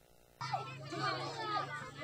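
Many children shouting and calling out together as they play, cutting in suddenly about half a second in, over a steady low hum.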